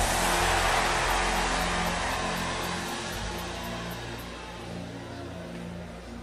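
A congregation crying out and praying aloud all at once, the crowd noise slowly dying away, over soft held keyboard chords.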